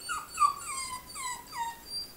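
Dachshund whining in a quick run of short, high cries, each falling in pitch, about four a second. This is the distress whining of a dog left alone, put down to major separation anxiety.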